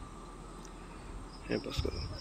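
Brief crackling rustle of plastic grafting tape being handled near the end, as the wrapping around a mango graft is finished. Before it, only a faint steady background.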